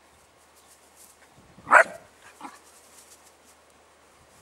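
A Tervuren shepherd puppy barks once, sharp and loud, then gives a fainter second yap about half a second later.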